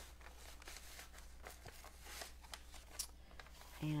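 Faint crinkling and rustling of a plastic zip bag and the gold leaf sheets inside it being handled: a loose string of small crackles and clicks.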